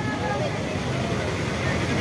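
A pause in a man's speech over a public-address system, filled by steady background noise, with the tail of his voice fading away at the start.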